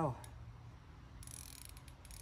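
Spinning reel clicking in scattered ticks as a hooked bass pulls on the bent rod, with a spell of hissing noise in the second half.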